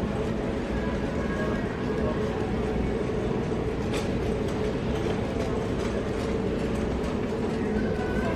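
Steady background noise of a large store, a constant hum with faint indistinct voices, and a single faint click about four seconds in.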